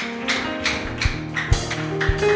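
Church worship band music breaking in for celebration: held keyboard chords with bright percussion hits, and low drum beats joining about halfway through.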